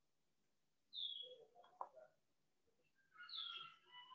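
Faint, short bird chirps that fall in pitch, two of them, about a second in and near the end, over near silence, with a faint click in between.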